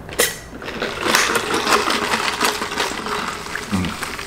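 Close-miked chewing of a mouthful of loaded carne asada fries: wet mouth clicks and smacks in a dense, irregular run, after a sharp noise right at the start, with a short low 'mm' near the end.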